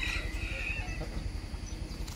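A rooster crowing: one drawn-out crow that ends about a second in, over a steady low rumble.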